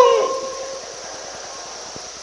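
The tail of a man's long, drawn-out call, one held note fading out with the hall's reverberation in the first half second or so, then low, steady room tone.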